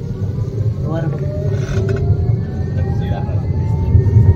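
Electric tram running, heard from inside the passenger car: a steady low rumble with a thin motor whine that rises slowly in pitch from about a second in as the tram picks up speed.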